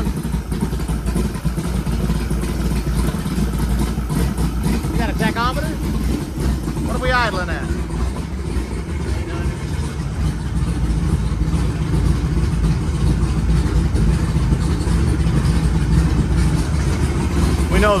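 551 hp Skip White stroker small-block Chevrolet V8 running steadily at a low, quiet speed, with the clatter of its rockers and pushrods audible. The engine gets slightly louder in the second half.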